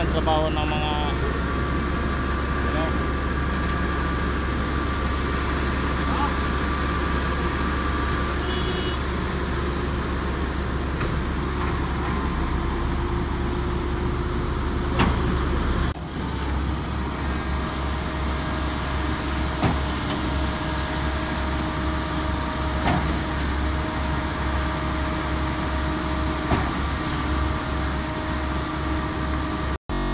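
Heavy diesel machinery running steadily with a deep, constant rumble: a concrete mixer truck and a concrete pump working together. The low rumble changes character about halfway through.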